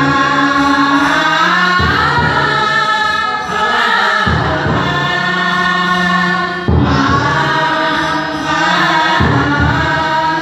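A chorus of male, female and child voices singing a Hindi song together to harmonium accompaniment, in long held lines with short breaks between phrases.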